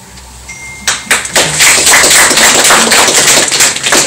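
Audience clapping: a few separate claps about a second in, quickly filling out into dense, loud applause that carries on to the end.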